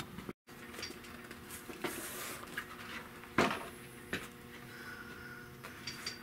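A few knocks and handling sounds as a vinyl-covered car interior panel is moved about on a workbench, over a low steady hum; the strongest knock comes about three and a half seconds in. The sound drops out completely for a moment half a second in.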